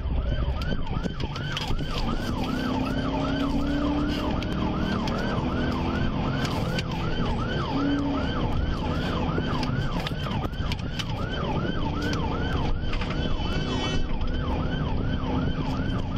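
Police car siren wailing in a fast, even cycle, about two to three rising-and-falling sweeps a second, during a high-speed pursuit. It is heard from inside the cruiser over steady engine and road noise.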